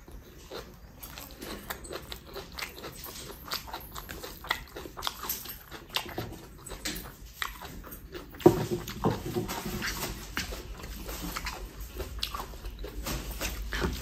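Close-up chewing and mouth clicks of a person eating rice and boiled egg by hand. It gets louder about eight and a half seconds in, as egg curry gravy is poured over the rice.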